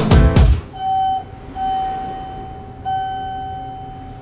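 Acoustic guitar music cuts off about half a second in, followed by an elevator chime: three electronic tones at the same pitch, the first short, the second long, the last one fading out.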